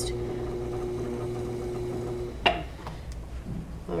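Electric pottery wheel's motor humming steadily as the wheel turns. The hum drops away a little past halfway, followed by a single sharp knock.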